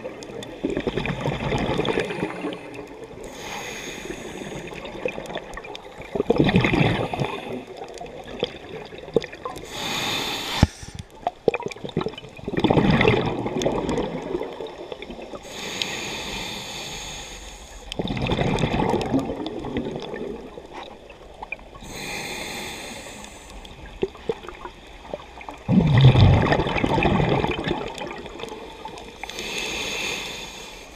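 Scuba diver breathing through a regulator underwater: a short hissing inhale and then a rush of exhaled bubbles, about one breath every six seconds.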